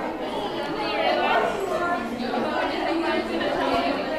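Women chattering in a crowded hall, several voices talking over one another.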